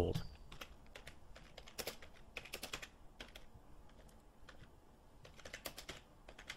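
Computer keyboard being typed on: a string of faint, irregular keystrokes, thinning out briefly in the middle.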